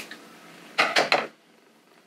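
Scissors handled over fabric on a table: a quick cluster of sharp clicks about a second in, then quiet.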